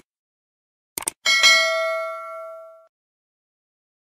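Computer mouse-click sound effects, one pair at the start and another about a second in, followed by a single bright bell ding that rings out for about a second and a half: the stock sound of a YouTube subscribe-button and notification-bell animation.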